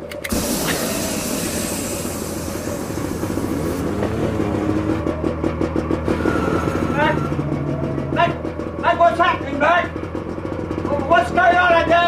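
Gas torch lit with a sudden whoosh just after the start, hissing sharply for about three and a half seconds while a lower, steadier flame sound carries on underneath.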